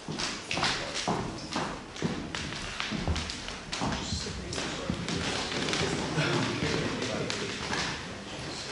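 Indistinct chatter of people in a room, with scattered knocks and thumps throughout.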